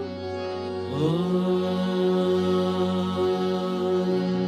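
The closing 'Om' of a Hindu aarti: a chanting voice slides up into one long, held 'Om' about a second in, over a steady drone.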